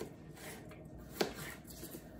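Faint knocks of a kitchen knife on a cutting board as vegetables are cut, a few light strokes with one sharper knock a little past halfway.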